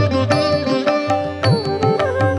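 Instrumental interlude of a Kannada devotional song: a plucked string melody over a rhythm of hand-drum strokes, some with low pitch-bending bass notes.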